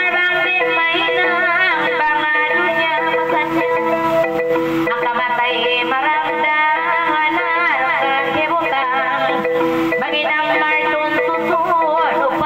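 A woman singing a Tausug kissa (sung narrative) in a wavering, ornamented voice over electronic keyboard accompaniment with a xylophone-like tone in the manner of the gabbang.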